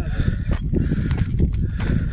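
Wind buffeting the microphone, a heavy, uneven low rumble.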